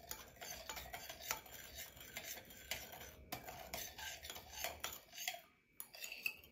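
A spoon stirring a sauce of sugar, dark soy sauce, soy sauce and oyster sauce in a bowl, with many small irregular clinks and scrapes against the bowl, to dissolve the sugar. The stirring stops about five seconds in.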